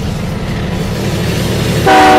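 Train running on the rails with a steady rumble that grows louder, and its horn sounding just before the end.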